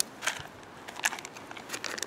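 A vacuum-sealed plastic bag of coffee beans crinkling and crackling as it is opened and handled, in short scattered crackles with a quick cluster near the end.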